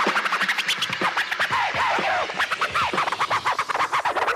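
House music with record-scratch sounds: rapid rising and falling pitch sweeps over a dense run of short clicks, with little bass underneath.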